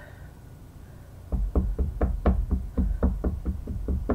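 An ink pad dabbed rapidly against a wood-mounted rubber stamp to ink it, making sharp knocks about five a second. The knocks start a little over a second in and come close to the microphone.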